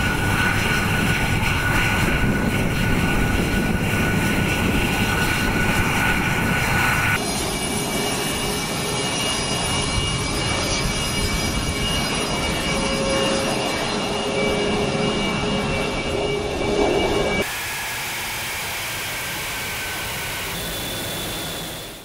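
Twin F119 turbofan engines of an F-22 Raptor running as it taxis: a steady jet whine over a rush of engine noise. The sound changes abruptly about seven seconds in and again near the end, then fades out.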